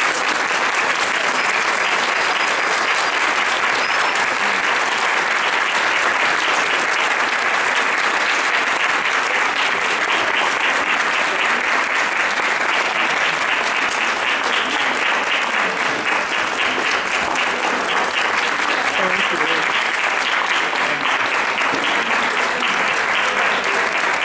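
Sustained audience applause: many people clapping, steady and even throughout.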